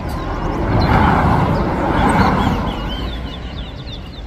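A vehicle passing on the road: a broad noise that swells up about half a second in, stays loud for a couple of seconds, then fades away. Short, high song notes from the caged finches chirp behind it and stand out again near the end.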